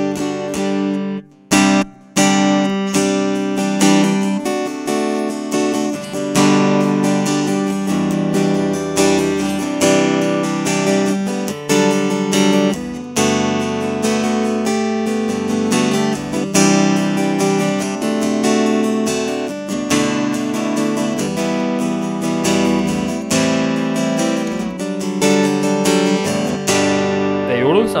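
Donner HUSH-I silent travel guitar with maple body and neck, strummed in chords through its pickup into an AER acoustic amplifier, with a short break about a second and a half in. The amplified tone is soft and sits between acoustic and electric, like an electric guitar fitted with acoustic strings.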